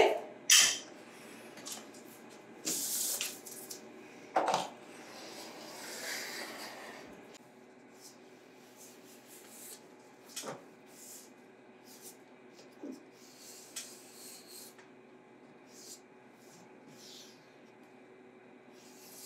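Quiet work sounds of caulking window trim: a few short, sharp clicks from a caulk gun, and soft rubbing as a gloved finger smooths the caulk bead, over a faint steady hum.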